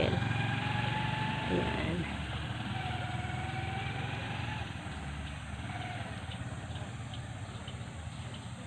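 Motorcycle engine of a sidecar tricycle running steadily as it pulls away, fading gradually as it moves off.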